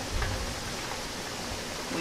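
Steady hiss of a gas stove burner running on high under a pan of oil that is still heating.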